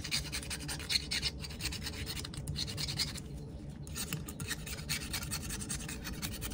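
Quick, repeated scratching strokes of a small hand tool on a pocket knife's frame, roughening the surface so the glue for new handle scales will grip. The strokes break off briefly about three seconds in, then carry on.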